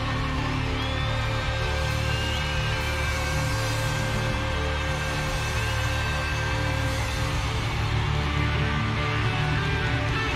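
Live band playing the instrumental part of a disco medley, with steady bass and held synth tones, and a large concert crowd cheering beneath it.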